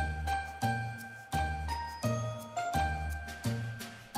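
Music jingle: bell-like tinkling notes over a low pulse that restarts about every two-thirds of a second, with a quick rising run of bell notes about halfway through.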